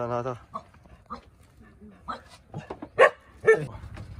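A dog barking twice, about three seconds in, the two barks half a second apart and loud.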